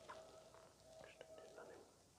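Near silence, with a faint whisper and a few soft clicks about a second in.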